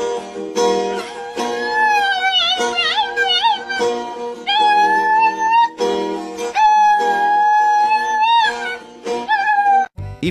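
Dog howling along to an acoustic guitar being strummed: a run of long, wavering howls, two of them held steady for about two seconds each, over strummed chords.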